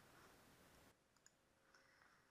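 Near silence: faint hiss, with two very faint clicks about a second in and again near the end.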